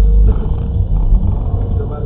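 Low engine and road rumble heard inside a car's cabin through a dashcam microphone as the car creeps away from a standstill, with a voice speaking over it.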